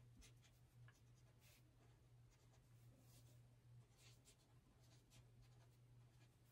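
Faint scratching of a felt-tip marker writing short strokes on brown kraft paper, over a low steady hum.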